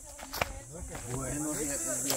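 Insects buzzing, a steady high-pitched drone, with one sharp click about half a second in and a man talking from about a second in.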